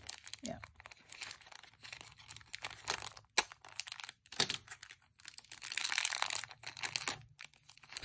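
Thin clear plastic packaging crinkling and tearing as it is worked open by hand and with a craft knife, with many short sharp crackles and a denser stretch of crinkling about six seconds in.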